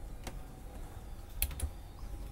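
Three light clicks, one about a third of a second in and two close together a little past the middle, over a low steady rumble.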